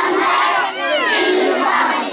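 A group of children and women loudly singing and shouting an action song together, many voices at once.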